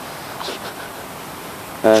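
Steady outdoor background hiss picked up by a phone microphone, with a faint brief sound about half a second in; a man's voice comes back near the end.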